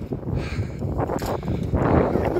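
Wind buffeting the phone's microphone, with rustling and knocks as the phone is handled and swung during walking.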